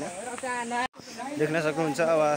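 People's voices talking over a steady background hiss, with the sound dropping out completely for an instant about a second in.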